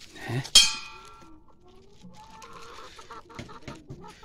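Domestic chickens clucking, with one sharp clang about half a second in that rings briefly and is the loudest sound.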